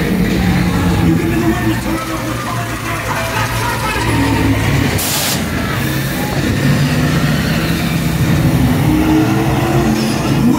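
Loud car-chase sound effects played through the ride's speakers: several car engines running and revving over a steady rumble. A short sharp hiss of air comes about five seconds in.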